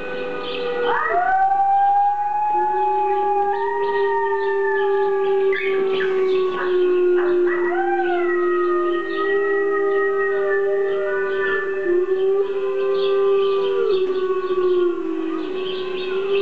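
A recorded chorus of wolves howling, played back through a device speaker. Several long howls overlap: one low howl holds nearly throughout, and higher howls rise in about a second in and again near the middle, then hold and waver.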